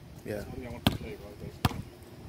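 Basketball bouncing on asphalt, dribbled twice, two sharp slaps a little under a second apart.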